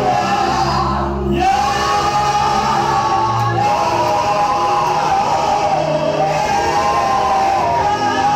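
Church worship singing: a woman's voice on a microphone leads long, held, sliding notes over the congregation singing along, with a steady low instrumental accompaniment.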